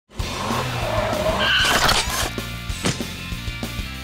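Channel intro music for a children's cartoon. A noisy sound effect swells over the first two seconds and peaks near the two-second mark, then gives way to a tune with a steady beat.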